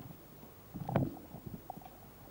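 Microphone handling noise: low rumbles with a sharp knock about a second in, as the handheld microphone is moved away from the speaker.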